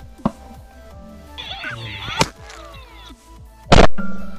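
Background music with sharp percussive hits, and near the end one very loud shotgun blast.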